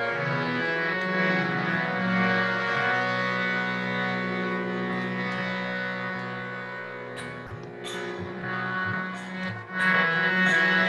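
Instrumental devotional music: a tanpura drone under held, slowly changing melodic notes. A few sharp, high strokes come in during the last three seconds.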